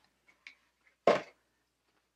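Handling noise as a cotton dust bag is lifted out of a cardboard box: a few faint ticks, then one short, louder rustle about a second in.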